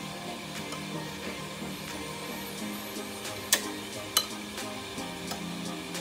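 A metal spoon scraping and clinking against a ceramic plate while beaten egg is spooned over a stuffed eggplant, with two sharp clinks about three and a half and four seconds in. Background music plays throughout.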